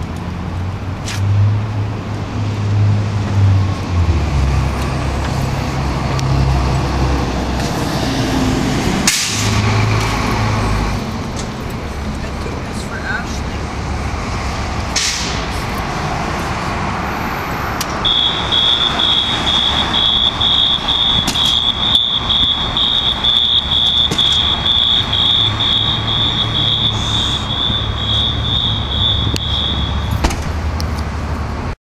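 City street traffic: vehicle engines running close by in a low, shifting rumble. A little past the middle a rapid, high-pitched electronic beeping starts, about two to three beeps a second, and keeps on steadily.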